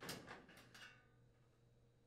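Stainless-steel burner control panel of an LG gas range being pulled off the range frame: a brief, faint sliding metal scrape at the start that fades out within about a second.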